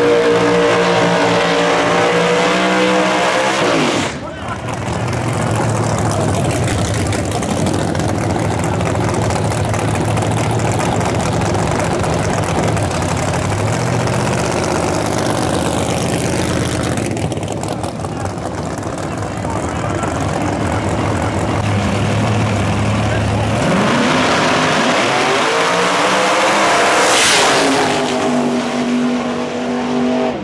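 Drag race car V8s at a drag strip. First a race car's engine revs up and is held high through a burnout. After a cut, an engine rumbles at low revs while the car rolls past. Near the end an engine revs up hard on a launch and passes loudly.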